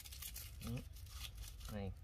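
Soft rustling and crinkling of a bundle of lemongrass leaves being pushed by hand into a whole tilapia's mouth, with a short spoken word near the end.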